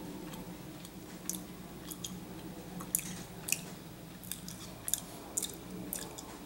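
A person chewing a bite of kousa dogwood fruit skin with the mouth closed: faint, irregular wet clicks and crunches, about one every half-second to second, over a low steady room hum. The skin is leathery, sandy and gritty.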